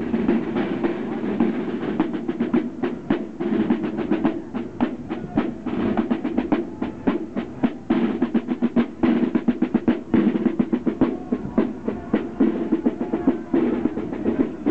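Marching drum corps playing snare drums with a bass drum: rapid strokes and rolls in a steady marching cadence.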